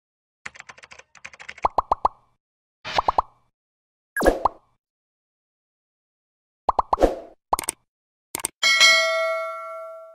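Sound effects for an animated intro: runs of quick clicks and short pitched pops in several separate groups, then a bell-like ding that rings on and fades away near the end, followed by a single click.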